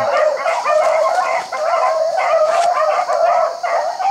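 A pack of beagles baying with many overlapping voices, giving tongue as they run a rabbit's scent trail.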